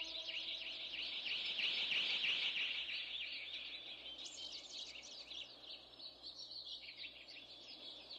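A chorus of birds chirping, with many rapid overlapping calls that fade gradually. The last of a held musical chord dies away in the first second.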